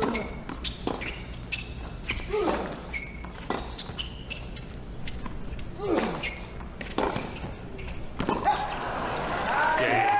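Tennis rally on a hard court: racket strikes on the ball every second or so, sneaker squeaks on the court surface, and a few short grunts from the players as they hit. Crowd noise swells near the end as the point finishes.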